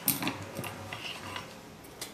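Discs of a Bowflex SelectTech 552 dumbbell being handled during teardown: one sharp click right at the start, then a few lighter clicks and taps over the next second and a half.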